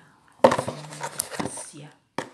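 A sharp knock about half a second in, then clicks and clatter from a phone and its cardboard box being handled close to the microphone, with a person's voice speaking over them.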